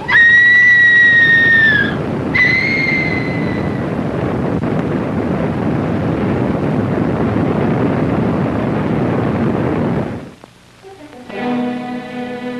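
A woman's high scream held for about two seconds, then a second shorter scream that fades away, over the steady rush of a waterfall. The rush cuts off about ten seconds in, and orchestral music begins near the end.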